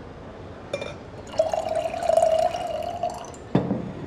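Wine poured from a bottle into a stemmed wine glass: a light clink about a second in, then a steady pour of about two seconds with a clear ringing tone from the filling glass, and a sharp knock near the end.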